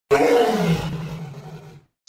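A beast's roar sound effect: one long, rough roar that starts suddenly, slides down in pitch and fades away over nearly two seconds.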